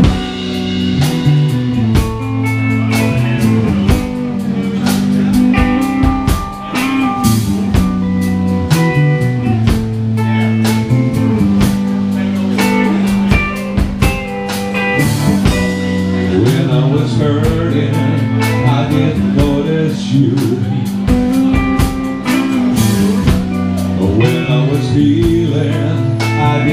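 Live rock band playing the instrumental opening of a song: guitars with a drum kit keeping a steady beat.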